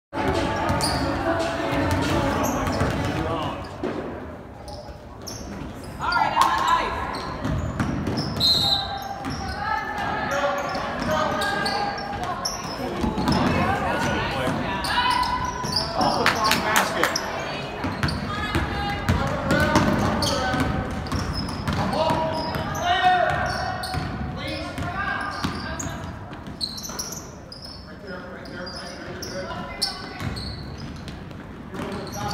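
Basketballs bouncing on a hardwood gym floor amid indistinct chatter of many voices, echoing in a large gymnasium.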